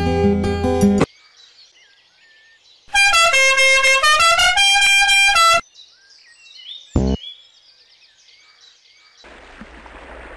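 Plucked-string music stops abruptly about a second in, leaving faint birdsong. A loud honking horn-like tone then plays several held notes at changing pitch for about two and a half seconds, followed by more faint chirping and a short thump. A wash of water noise begins near the end.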